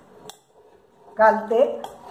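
A steel spoon clinks once against a steel bowl about a third of a second in, as the marinated mutton is scooped out of the bowl; a woman's voice comes in over the second half.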